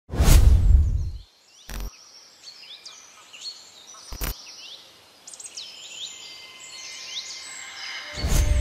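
Intro sound effects over birdsong. A deep whoosh-boom opens, and it is the loudest sound. Two short, sharp hits follow, nearly two seconds in and again about four seconds in, while many birds chirp throughout.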